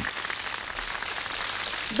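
Studio audience applauding, a steady even clatter of many hands.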